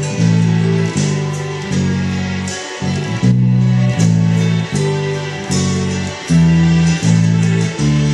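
Four-string electric bass guitar playing a steady line of held, plucked notes, a new note about every three-quarters of a second, over the song's full band recording.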